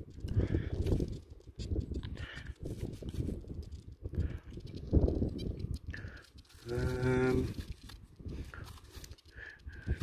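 Low, uneven wind rumble on the microphone, with one steady farm-animal call lasting under a second about seven seconds in.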